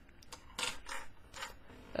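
Loose plastic Megaminx puzzle pieces being handled and set down on a table: a few soft clicks and scrapes spread through two seconds.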